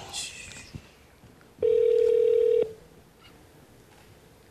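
Telephone ringback tone through a smartphone's speaker: the called phone is ringing and has not yet been answered. One steady, even tone of about a second sounds about a second and a half in.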